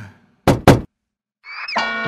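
Two sharp knocks a fraction of a second apart, then a short silence before bright music starts near the end with a rising glide.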